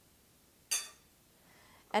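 A metal spoon clinks once against a glass jar, about two-thirds of a second in, with a short bright ring that dies away quickly.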